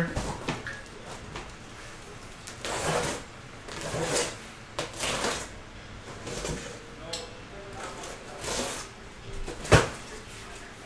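Cardboard shipping case of card boxes being opened and handled: a run of scraping, rustling swishes of cardboard, then a sharp knock just before the end.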